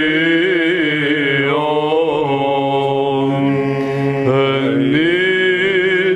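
Byzantine chant in the third mode: a male voice singing a slow, melismatic line over a steady low drone (ison).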